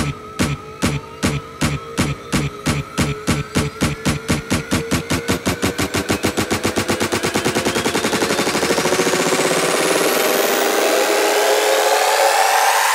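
Electronic dance music build-up: a drum roll that speeds up from a few hits a second into a continuous roll, under tones rising slowly in pitch. A high sweep climbs over the second half while the bass drops away toward the end, leading into the drop.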